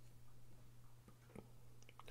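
Near silence: room tone with a low steady hum and two faint small clicks in the second half as the closed folding knife is handled.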